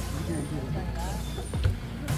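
Indistinct voices talking over a steady low rumble, with a couple of short low knocks near the end.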